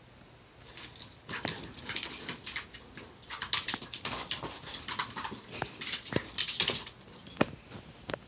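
Small dog and kitten scuffling in play: about six seconds of dense, scratchy scrabbling of paws and claws on the wooden floor and rug, followed by a couple of sharp taps near the end.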